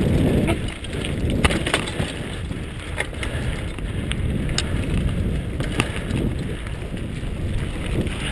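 Mountain bike rolling down a dirt trail, heard from a first-person camera: wind rumbling on the microphone, with scattered sharp clicks and rattles from the bike going over bumps.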